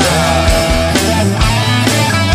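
Rock band playing an instrumental passage: an electric lead guitar holds sustained, slightly wavering notes over bass guitar and drums, with a drum hit about twice a second.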